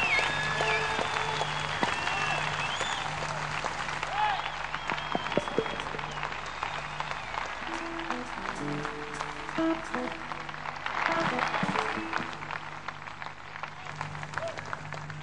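Concert audience applauding, with a few shouts, and a few short instrument notes heard about eight to ten seconds in.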